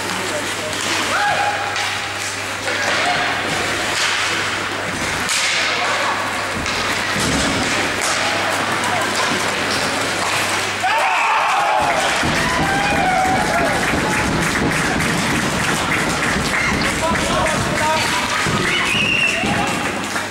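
Ice hockey in play: sticks and puck knocking on the ice and boards, with spectators' voices shouting. The crowd gets louder about eleven seconds in and stays louder.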